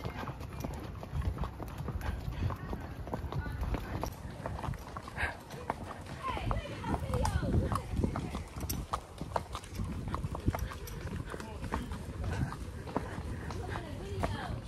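Horse hooves clip-clopping at a walk on a dirt trail, recorded from the saddle.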